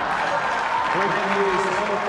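Audience applauding, with a man's voice starting about a second in.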